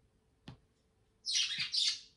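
A pet talking bird gives a loud, high-pitched two-part call about a second in: its mimicked "where's daddy?". A single light tap comes just before it.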